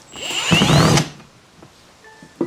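Milwaukee cordless drill backing out a screw from a vinyl seat's metal hinge bracket: a motor whine rising in pitch for about a second, then stopping.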